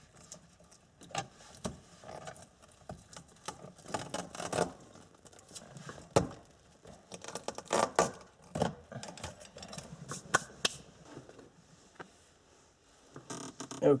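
Irregular clicks, knocks and scrapes of the rubber shift boot and loose center-console trim being handled and lifted around a Datsun 240Z's shift lever.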